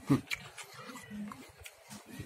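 A man's short closed-mouth "hmm" with falling pitch just after the start, then a few soft mouth clicks and a quieter low hum in the middle while he chews raw snake gourd.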